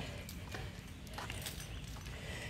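Quiet, irregular footsteps and light clicks on a concrete floor as a person walks a leashed dog.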